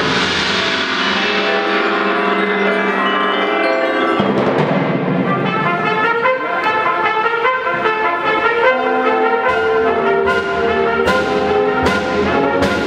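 High school concert band playing a full passage, with brass carrying sustained chords over the woodwinds. Several sharp percussion strikes come in the last two seconds.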